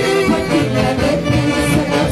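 Live dance orchestra with saxophones playing a lively tune at full volume.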